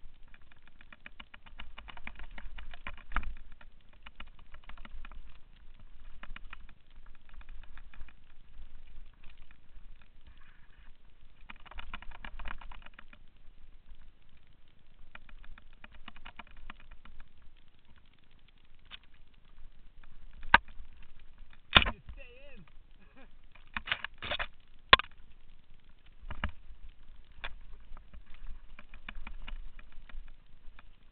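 Mountain bike rolling fast down a dirt singletrack: stretches of rapid clicking and rattling over rough ground, with several sharp loud knocks from bumps about twenty to twenty-five seconds in.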